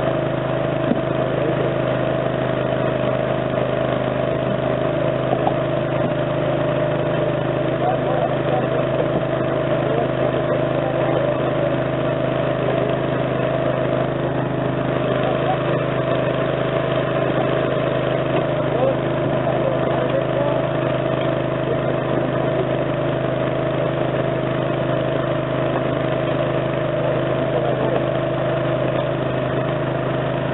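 An engine running steadily at one unchanging pitch, a constant drone, with voices in the background.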